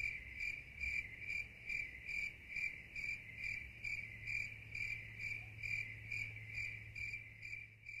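Crickets chirping: a steady, fairly faint high trill that pulses evenly a little over twice a second, over a low steady hum.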